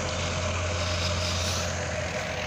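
Tractor-driven threshing machine running steadily: an even engine drone with a deep hum and a constant whine over it.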